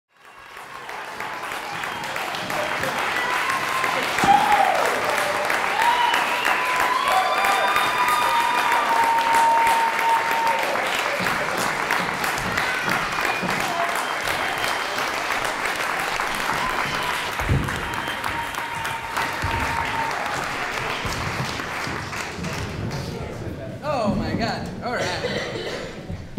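Theatre audience applauding a curtain call, steady clapping with voices cheering and whooping over it. It fades in at the start.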